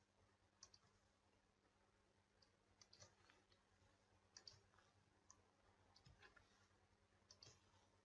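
Near silence: faint room tone with a low hum and a few faint, scattered clicks.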